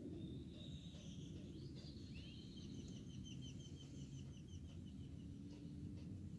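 Faint bird song: a thin whistle, then a rapid run of short repeated chirping notes, about four a second, lasting around three seconds, over a steady low background rumble.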